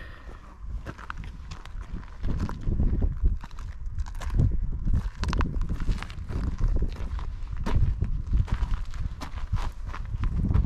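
Footsteps crunching on a gravel path in an irregular walking rhythm, over a low, fluctuating rumble of wind on the microphone.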